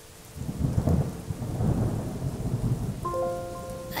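A long rumble of thunder over rain, starting about half a second in and dying away near the end as a few held musical notes come in.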